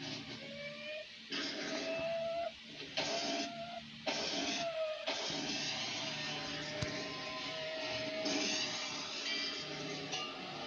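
Cartoon soundtrack playing from a television: music and sound effects, with stop-start bursts of hissing noise over a held, slightly gliding whistle-like tone. There is a single sharp click about seven seconds in.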